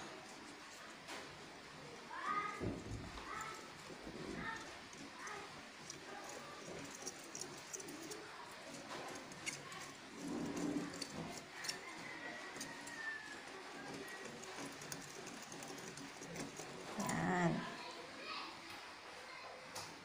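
Faint light ticking of a wire whisk against a glass bowl as dry flour, sugar and agar powder are stirred. Brief background voices come in about two seconds in and again near the end.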